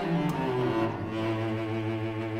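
Solo cello bowing a few short notes stepping downward, then holding one long low note from about a second in.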